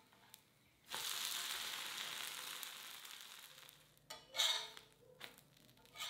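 An onion uthappam sizzling on a hot, oiled tawa just after being flipped with a steel spatula: a hiss that starts suddenly about a second in and fades over the next two or three seconds. A short, separate noise follows about four seconds in.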